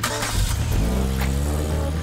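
Robot vacuum switching on: its motor spins up with a rising whine in the first second, then runs steadily with a rushing hum.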